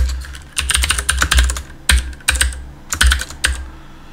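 Computer keyboard being typed in several quick bursts of keystrokes with short pauses between them.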